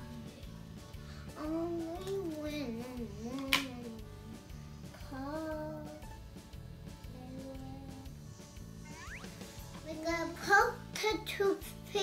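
A young girl humming a wandering tune to herself without words, with one sharp click about three and a half seconds in.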